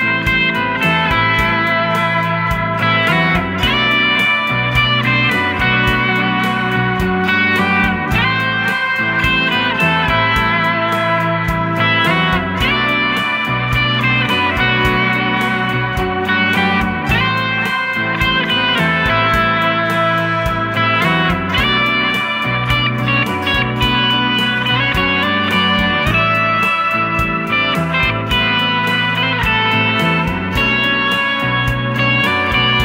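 Electric guitar lead on a Stratocaster-style guitar playing a pentatonic phrase with wide vibrato and slides. Underneath runs a looped backing of guitar arpeggios and a bass line played back by a Boss RC-500 looper.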